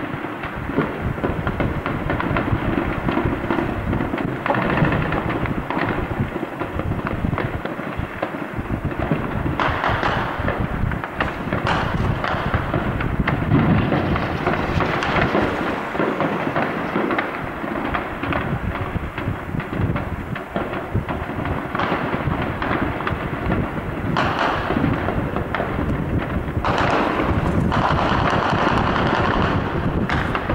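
Heavy, sustained gunfire: many shots overlapping in a continuous crackle over a rumbling undertone, swelling louder about ten seconds in and again near the end.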